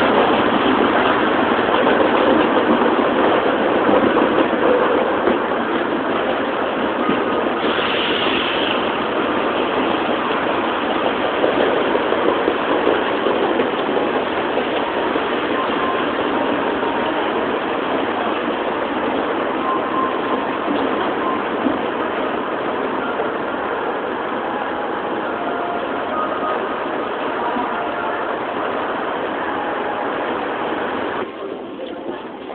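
Steady road-traffic noise from buses and cars passing, loudest in the first few seconds as a bus goes by close, then easing off gradually.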